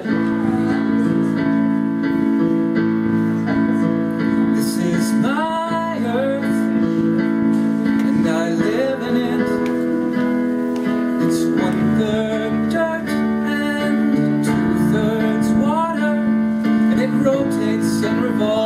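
Piano part played on a Yamaha digital keyboard: sustained chords with a melody line over them, beginning right at the start.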